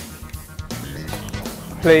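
Background music with guitar, with a man's voice starting right at the end.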